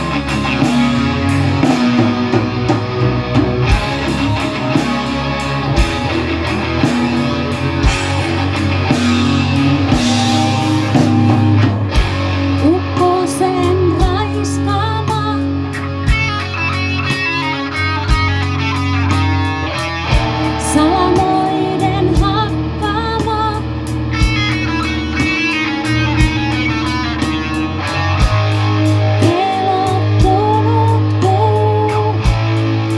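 Live rock band playing: electric guitars, bass guitar, drum kit and keyboards, with a woman's lead vocal coming in about twelve seconds in.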